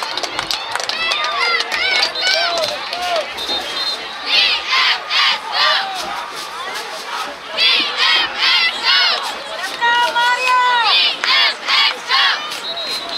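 Cheerleaders shouting a rhythmic chant in high voices, in runs of four or five sharp syllables, over chatter from the crowd.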